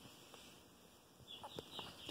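Near silence: room tone, with a few faint short ticks near the end.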